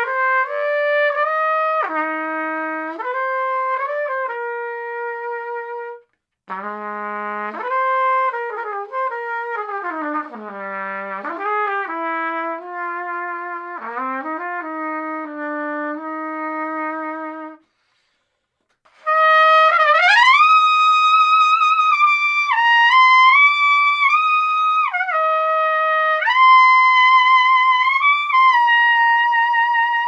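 Trumpet played through a plastic Brand Scream mouthpiece: a middle-register phrase, then a lower passage of quick runs and slurs, a short pause, and a louder high-register passage that rips up at its start and holds notes with vibrato.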